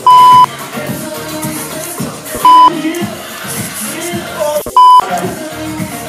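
Three short, loud, steady censor bleeps, near the start, in the middle and near the end. They sit over pop music playing, with voices and laughter underneath.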